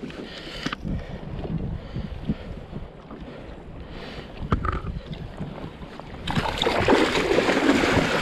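Low sloshing of sea water against a kayak, with wind on the microphone and a few sharp clicks. About six seconds in, a hooked Pacific halibut thrashes at the surface beside the kayak, and loud, continuous splashing takes over.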